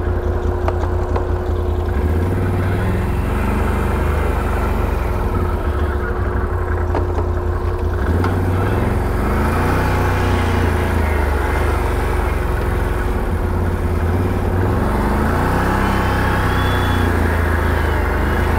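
Can-Am Renegade 1000 XMR ATV's V-twin engine running at trail speed, its pitch rising and falling a few times as the throttle is worked, with a steady whine under it.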